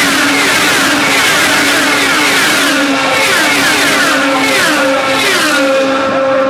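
A pack of IndyCars, 3.5-litre Honda V8s, passing close at racing speed one after another, each engine's high note dropping in pitch as it goes by.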